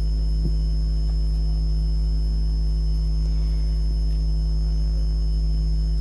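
Steady low electrical mains hum on the audio feed, an unchanging drone with no other sound over it.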